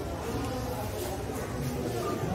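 Indistinct, distant chatter of voices over a steady low hum.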